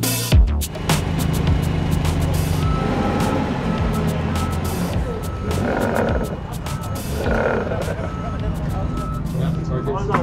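A Cat forklift's engine running under load as its wheel spins in soft dirt, with two surges of spinning. Its warning beeper sounds in a steady series of beeps. The forklift is stuck in a muddy hole on the grass. Music plays underneath.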